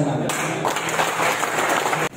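A crowd applauding, starting about a quarter of a second in.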